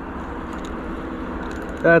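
Small spinning reel being cranked to retrieve a lure, a faint steady whir under outdoor noise. A man's voice starts near the end.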